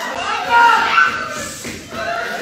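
Several people's voices talking over one another, words not made out.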